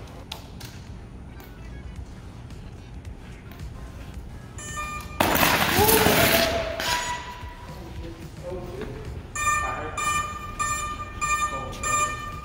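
The hoverboard's electronics short out with a sudden loud hiss of spraying sparks about five seconds in, lasting about a second and a half over a low background hum. Later a high electronic tone sounds on and off.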